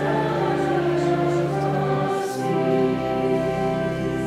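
Hymn music with voices singing in held chords; the chord changes about two seconds in.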